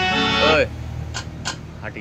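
Electronic multi-voice harmonium playing sustained chords that stop about half a second in, followed by a quieter gap with three sharp clicks.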